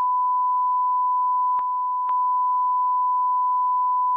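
Steady, pure test tone on a broadcast news feed's audio circuit, the line-up tone of a live feed. It is interrupted only by two faint clicks about a second and a half and two seconds in.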